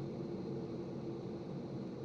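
Steady drone of a B-52 bomber's jet engines heard inside the crew cabin: an even rumble with a constant low hum.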